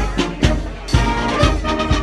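High school marching band playing while marching: brass horns hold chords over a steady drum beat of about two hits a second.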